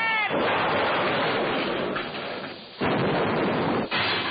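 Cartoon sound effect: two long bursts of loud, rough noise with no pitch. The first lasts about two and a half seconds and fades out. The second starts abruptly and lasts about a second. A falling whistle-like tone cuts off just as the first burst begins.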